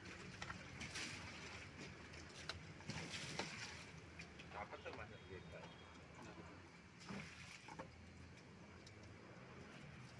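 Faint light knocks and rustles of plastic pipe fittings being handled against a plastic bucket.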